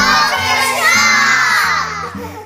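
A crowd of children shouting and cheering together, starting suddenly and dying away near the end, over background music.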